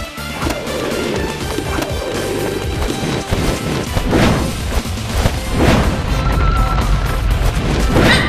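Upbeat cartoon action music, with two whooshing sound-effect sweeps about four and five and a half seconds in.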